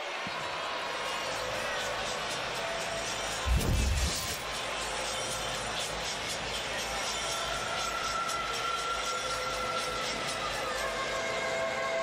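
Arena crowd noise with music over the sound system, broken by one loud low thump about three and a half seconds in.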